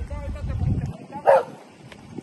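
A dog barks once, sharply, about a second in, after a low rumble that cuts off just before it.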